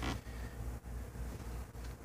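Quiet background in a truck cab: a low steady hum with a faint thin hiss, no distinct event.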